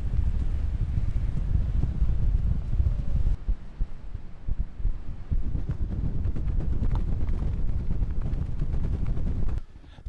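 Strong wind buffeting the microphone: a low, uneven rumble in gusts that eases a little about a third of the way in.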